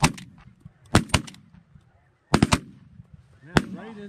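A volley of shotgun fire from several hunters shooting at once: about eight shots in quick clusters, at the start, around one second in and around two and a half seconds in, with a last single shot near the end.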